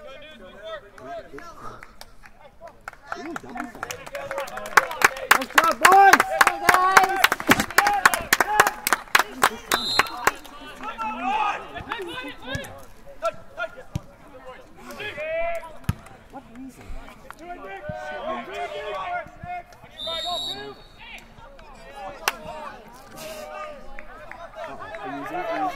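Shouting voices over a rapid train of sharp hits, about four a second, in the first part; a referee's whistle blows briefly about ten seconds in and again about twenty seconds in, with a few single thuds between.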